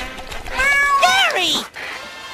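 A cartoon snail's cat-like meow: one loud, drawn-out call that bends in pitch and then drops away, over faint background music.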